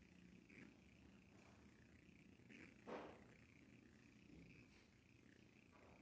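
Near silence: room tone in a quiet church, with one brief soft sound about three seconds in.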